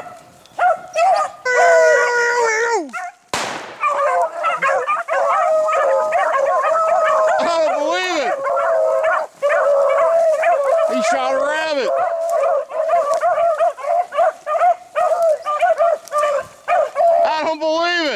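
A pack of beagles baying and yelping in overlapping voices as they run a rabbit on its scent, with near-continuous cries through most of the stretch. A single sharp crack about three seconds in.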